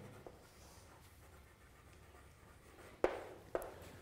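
Chalk writing on a blackboard: faint scratching of the chalk, then two sharp chalk taps on the board about three seconds in.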